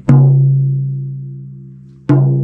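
Tom drum with a coated Remo batter head struck once in the centre with a felt mallet, ringing out at a low steady pitch that dies away slowly over about two seconds. It is a test stroke for reading the drum's fundamental note on a Tune-Bot tuner.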